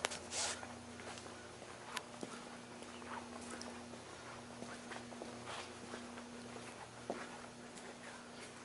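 Faint footsteps of a person walking, scattered soft steps and knocks, with a louder brush of noise just after the start. A steady low hum runs beneath.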